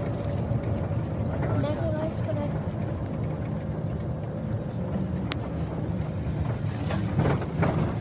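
Steady low rumble of engine and road noise inside a moving car's cabin, with voices heard at times over it.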